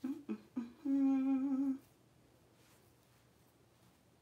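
A woman humming briefly: three short notes, then one held, slightly wavering note lasting under a second.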